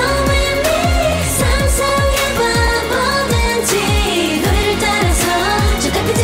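A K-pop song by a female group: women's voices singing over a steady dance beat with deep, pitch-dropping bass-drum hits.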